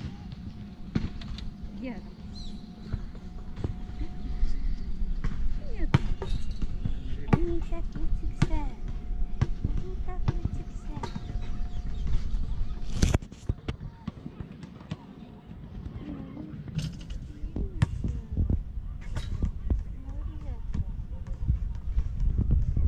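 Outdoor ambience with a steady low rumble and scattered sharp clicks and knocks, the loudest about 13 s in. A faint steady tone runs through roughly the first half. A woman's voice calls briefly near the start.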